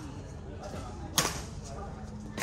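A badminton racket striking a shuttlecock once, a single sharp crack a little over a second in.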